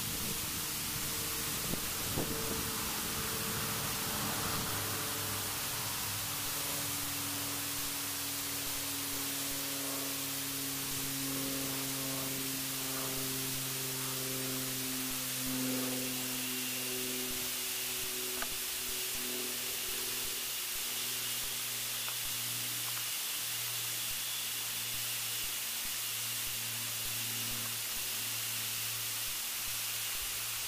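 Steady hiss of recording noise, with faint held low tones that change pitch slowly in steps through the middle.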